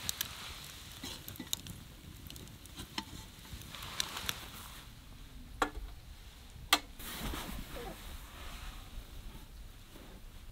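Wood fire crackling, with scattered sharp pops; the two loudest pops come a little past halfway.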